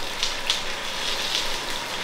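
Pork shoulder sizzling steadily as it sears in the pot, with a few faint, sharp clicks.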